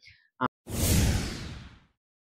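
A whoosh transition sound effect on the edit, starting suddenly and fading out over about a second, led in by a brief click.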